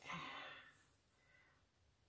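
A woman's soft sigh, a breath out that fades away within the first second, then near silence.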